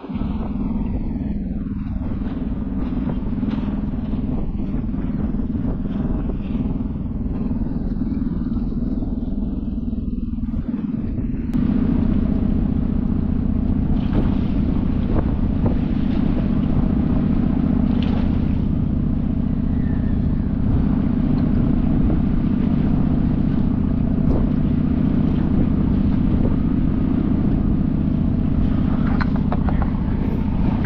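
Steady low mechanical drone, machinery or an engine running, with several steady low tones; it steps up louder about a third of the way through, with a few faint clicks over it.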